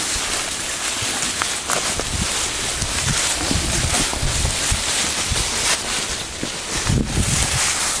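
Footsteps of a group walking through dry fallen leaves: continuous crunching and rustling, with wind and handling noise on the microphone.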